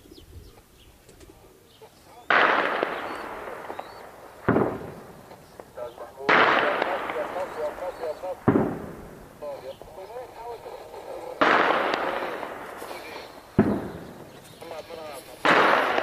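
Seven heavy blasts of explosions and heavy weapons fire. Each one starts suddenly and echoes away over a second or two, and they come at intervals of about two seconds.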